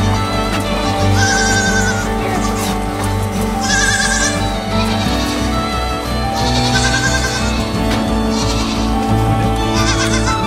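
Young goat kids bleating about five times, short wavering calls, over background music with long held notes.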